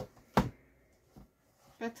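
A single sharp tap about half a second in as the closed handmade cardboard notebook holder is handled on the table, then a soft low thump a little later.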